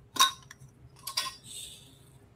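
A glass jar with a metal lid being handled: a few sharp clinks, then recycled plastic pellets sliding and rattling inside the glass as the jar is tipped, shortly after the middle.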